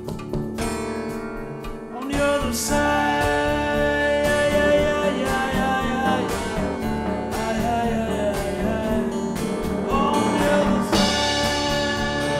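Acoustic guitar played lap-style with a slide in a live blues performance, with a singing voice. The first two seconds are quieter single plucked notes; then the playing gets louder and fuller, with sliding notes.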